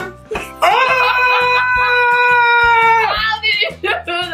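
One long, held cheering shout that rises at the start and then holds one pitch for about two and a half seconds, over background music with a steady beat.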